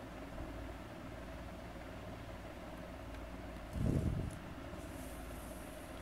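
Faint pencil scratching as a line is drawn along a plastic ruler on graph paper, over a steady low hum. A brief low-pitched sound comes about four seconds in.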